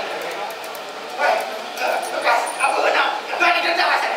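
A voice making short, high-pitched whimpering cries in several bursts, starting about a second in.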